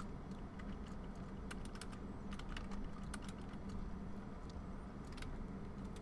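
Computer keyboard being typed on in short irregular runs of keystrokes, faint, over a low steady hum.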